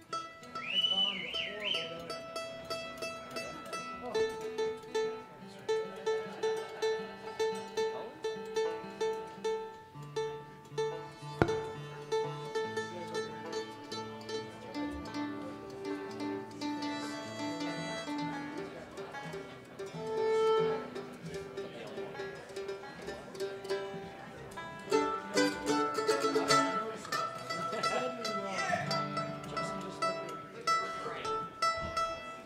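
Acoustic string band playing an instrumental passage: mandolin and acoustic guitar with fiddle and electric bass.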